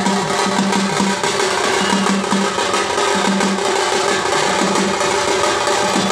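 Cylindrical double-headed drum played in a fast, dense, continuous rhythm, with a low ringing drum tone coming in short repeated stretches.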